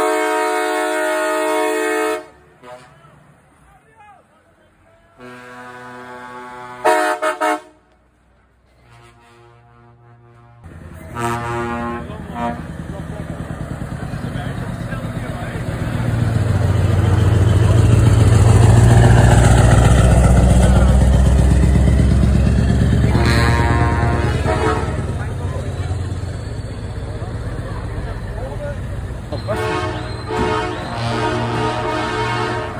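Truck air horns sounding in a series of blasts, the first a long one at the start. A heavy diesel truck then passes close by, its deep engine rumble building to a peak past the middle and easing off, with one more horn blast along the way.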